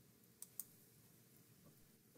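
Near silence on a video call, broken about half a second in by two short clicks a fifth of a second apart.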